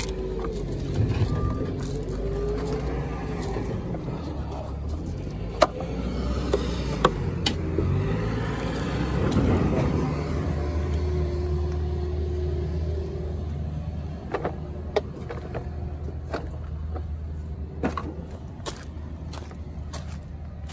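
A motor vehicle engine running nearby as a steady low hum, swelling louder around the middle and then easing off, with a few sharp clicks and taps.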